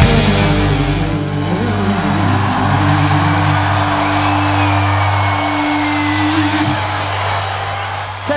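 A rock band's last chord ringing out on electric guitar and bass through stage amplifiers after the playing stops. Steady low notes are held over a noisy haze, with a faint falling whine of amp feedback midway and the higher note dying a little before the end.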